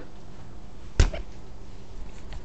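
A single sharp knock about a second in, followed by a few faint clicks over low room noise.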